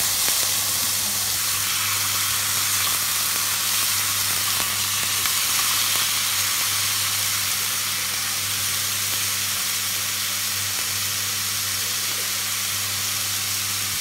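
Chicken pieces sizzling steadily in a hot frying pan over medium-high heat as they brown, stirred and turned with a silicone spatula.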